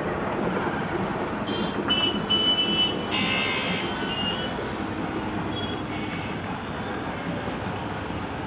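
Street traffic noise: motorbikes and auto-rickshaws running past in a steady rumble, with a few brief high squeals in the first half.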